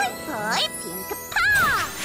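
Cartoon magic-spell sparkle effect, a tinkling chime, over background music. It comes with two swooping, gliding sounds, about half a second in and around one and a half seconds.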